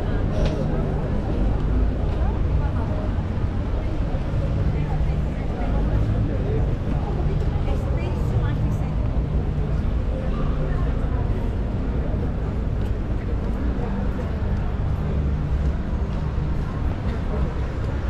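Busy city street ambience: indistinct chatter of passers-by over a steady low traffic rumble.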